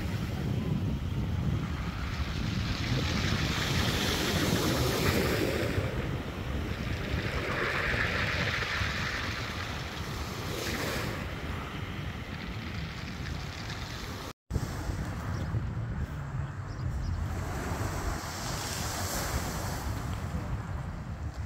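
Small waves breaking and washing up a shingle beach in a steady, swelling surf, with wind rumbling on the microphone.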